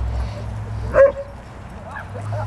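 A dog gives one short bark about a second in, while playing.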